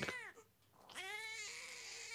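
A baby crying: one wail falls away, then after a short break a second long, drawn-out wail begins about a second in.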